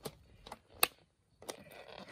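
Three short, sharp plastic clicks as a fruit-fly culture cup is handled and tipped against the rim of a mesh mantis enclosure. The middle click, a little under a second in, is the loudest.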